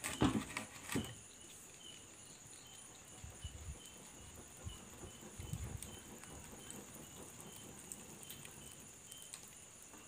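Wood fire burning under a cooking pot, with a few knocks in the first second and scattered soft crackles and thuds after. Insects chirp steadily in the background, short chirps repeating about once a second.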